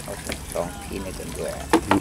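Water sloshing in a shrimp lift net as it is hauled up, over a steady low hum, with faint voices in the background and a short sharp sound near the end.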